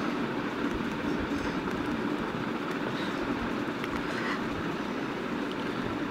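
Steady background hum and hiss, with a few faint clicks from the crochet chain and metal key ring being handled.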